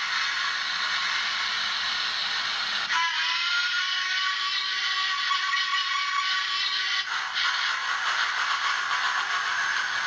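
Hornby TTS sound decoder in a stationary City of Birmingham Coronation class model locomotive playing recorded steam sounds through its small speaker: a steady hiss of steam, broken about three seconds in by a steam whistle that sounds for about four seconds before the hiss returns.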